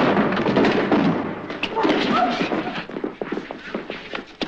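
A run of thumps and knocks, coming thicker in the second half, with a wordless voice sounding briefly about two seconds in.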